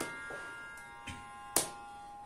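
A steady tanpura drone under a pause in Carnatic singing, with sharp hand claps keeping the Adi tala: one at the start and another about one and a half seconds in, with a softer tap between.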